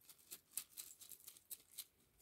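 Small charms shaken inside a cloth pouch: a faint, rhythmic rustle and rattle, about four shakes a second.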